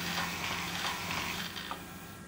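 Faint mechanical running of a ProMinent Sigma dosing pump, with a low hum that cuts out a little under a second in and the rest dying away: the pump stopping as its controller is put on stop.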